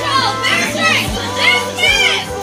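A group of young people calling out and shouting together in short, repeated cries, over background music with low thumps.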